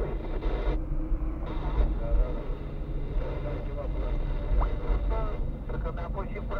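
Steady low rumble of a car driving, heard from inside the cabin, with faint voices in the background.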